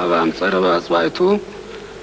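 A man's voice intoning a prayer in a steady, chant-like pitch. It breaks off about one and a half seconds in and gives way to a faint steady buzzing hum.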